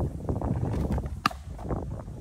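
A pitched baseball striking the catcher's leather mitt: one sharp pop a little past a second in, over wind and the pitcher's movement on the dirt.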